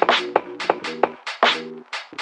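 Instrumental boom-bap hip hop beat: sharp drum hits about three a second, each trailed by short pitched notes.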